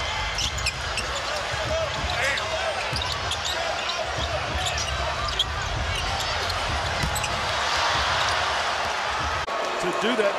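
Arena crowd noise during live basketball play, with a basketball being dribbled and short high sneaker squeaks on the hardwood court. The crowd noise swells about seven seconds in.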